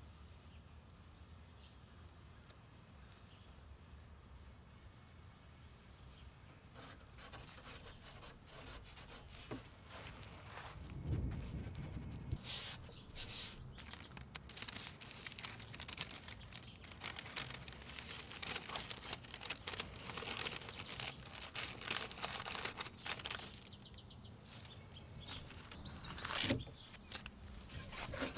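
Faint outdoor ambience with a steady high background tone, then, from about ten seconds in, bursts of crackling and tearing as painter's tape is pulled off and pressed down over freshly epoxied veneer on a wooden drawer front.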